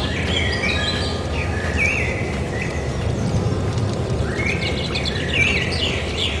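Birds chirping and calling in short, gliding phrases, with a steady low rumble underneath.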